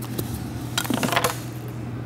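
A carpet sample tile being picked up off a table and handled: a click near the start, then a quick cluster of clicks, scrapes and rustles about a second in, over a steady low hum.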